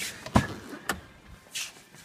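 Handling noise at a small car's open driver's door and cabin: a knock about half a second in, a sharp click about a second in, then a brief rustle.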